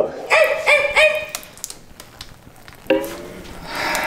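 A man yipping and barking like a dog, about four quick high yips in the first second and a half, then a single lower call about three seconds in.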